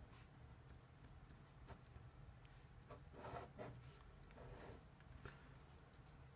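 Pen writing on paper: faint, short scratching strokes as a number and its units are written out and a box is drawn around them.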